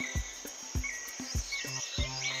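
Soft background music track with a steady low beat, about three thumps a second, and high cricket-like chirps over it.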